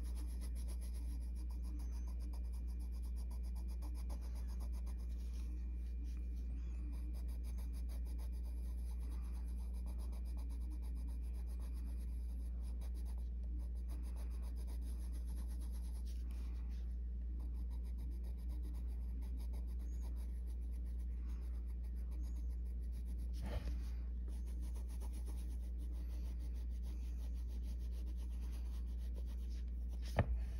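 Coloured pencil scratching over paper in short, rapid, repeated shading strokes, over a steady low hum. A small tap comes about two-thirds of the way through.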